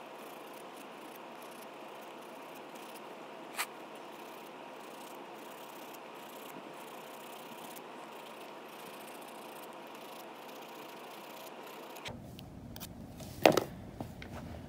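Steady faint hiss with no rhythm in it, cut off sharply below the bass and broken by a single small click a few seconds in. A couple of sharp knocks come near the end.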